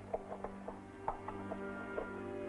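Held chords of dramatic film-score music, with a run of small, irregular mechanical clicks and clacks over them, as of a device being handled.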